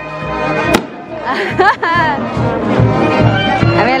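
Brass band playing held notes, with crowd voices over it and a single sharp crack just under a second in.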